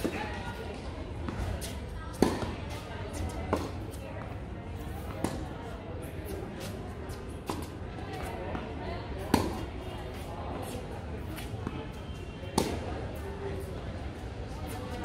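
Tennis rally on a hard court: a sharp pop of racket on ball or ball on court every one to three seconds. The loudest strikes come about two seconds in, near nine seconds and near the end, with fainter pops between them.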